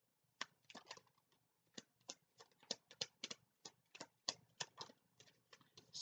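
Tarot cards being shuffled and handled by hand: a quiet, irregular run of soft card clicks and taps, about three to four a second.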